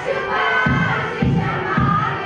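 Many voices singing together with music, over a steady drum beat of about two strokes a second.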